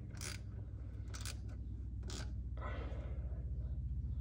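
Ratchet turning a tap through a 9 mm socket, cutting threads into the soft metal of a Hydro-Gear EZT 2200 transmission case. Short scraping bursts of ratchet clicks come about once a second as the handle is worked, over a steady low hum.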